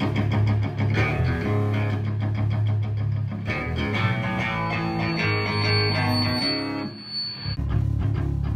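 Amplified electric guitar and bass guitar playing a metal riff together, the guitar fast down-picked over a heavy bass line. A steady high tone rings for a few seconds in the middle, and the playing dips briefly near the end.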